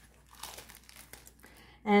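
Faint crinkling and rustling of a clear plastic protective liner being peeled off the sticky adhesive inside a self-adhesive bra cup.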